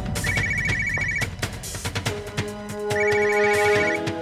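Mobile phone ringing with a trilling electronic ringtone: two rings, each about a second long, the first just after the start and the second near the end.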